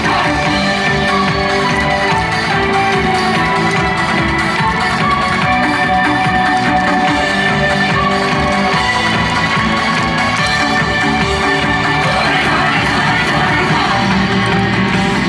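Loud recorded yosakoi dance music played through outdoor PA loudspeakers, running steadily throughout.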